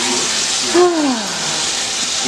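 Chicken thighs sizzling steadily in hot olive oil and butter in an electric skillet. A short voice sound falling in pitch comes about a second in.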